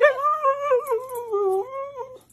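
Husky "talking" back in protest: one long, wavering howl-like call whose pitch dips about a second and a half in and rises again near the end.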